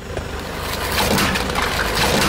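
A car tyre rolling over a plastic toy watering can full of water beads, the plastic crackling and cracking as it is crushed flat, over the low rumble of the car.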